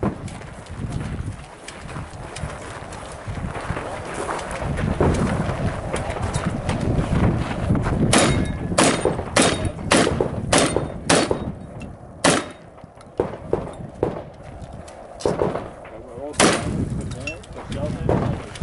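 Gunfire from a competitor on a 3-gun stage. About six shots come roughly half a second apart, starting about eight seconds in, followed by three more shots spaced a second or more apart.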